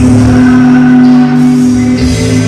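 Live rock band playing loudly through the PA in a large hall, holding one sustained chord that changes near the end.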